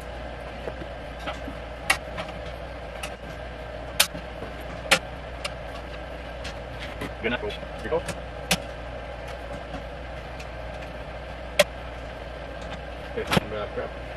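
Scattered sharp metallic clicks and clinks as bolts are pushed by hand through the metal handle and frame of an Earthway garden seeder, over a steady low hum.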